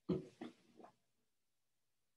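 A brief grunt-like vocal sound in three quick pulses, over within about a second.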